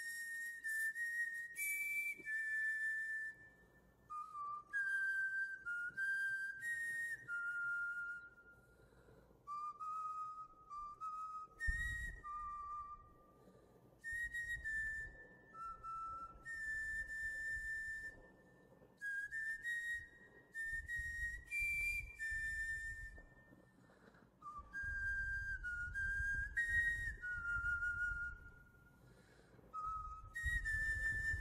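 A whistled tune: a slow melody of single held notes that step up and down, in short phrases with brief pauses, over a faint low accompaniment.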